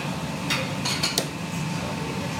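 Kitchenware clattering in a busy noodle-restaurant kitchen: a few sharp metal-and-bowl clinks in quick succession between about half a second and just over a second in, over a steady low kitchen hum.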